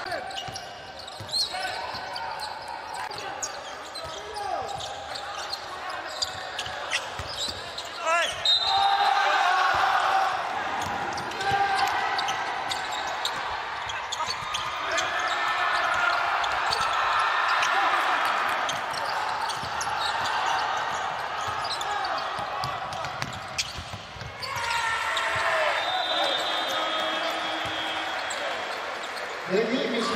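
Live court sound of an indoor basketball game: a basketball bouncing on the hardwood floor, with repeated sharp knocks over shouting voices and hall noise.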